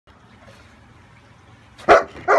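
Bernese Mountain Dog giving a single loud bark near the end.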